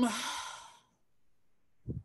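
A woman's breathy exhale, a sigh that trails off from a drawn-out "um" and fades away within the first second, followed by a short silent pause.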